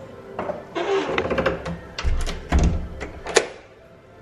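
A room door being handled: a run of clicks and knocks with two heavier thuds about two seconds in, ending in one sharp latch click.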